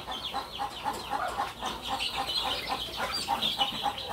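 A brood of ten-day-old chicks peeping continuously: many short, high-pitched, falling peeps overlapping several times a second.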